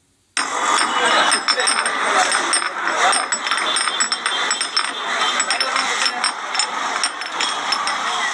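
Busy street ambience: many voices chattering among motor traffic, with frequent small clicks and clatters, cutting in abruptly just after the start.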